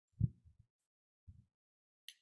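A few dull, low thumps: a loud one right at the start with a weaker one just after, and another about a second later.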